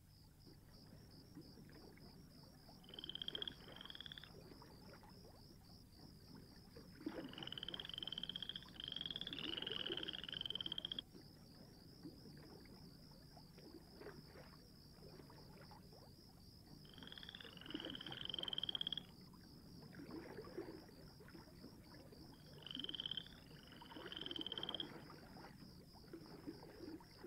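Faint nature ambience of frogs croaking in four short bouts of quick repeated calls, over a steady high pulsing trill.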